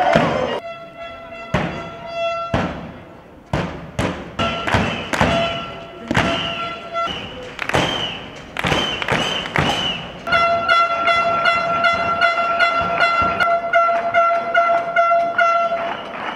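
Street protest noise: repeated sharp thumps of beating and clapping, short falling whistle blasts, and a steady pitched horn blast held for several seconds near the end.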